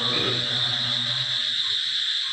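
Assamese nam kirtan chanting by devotees: a held chanted note that fades away about a second in, leaving a short lull. A steady high-pitched tone runs underneath.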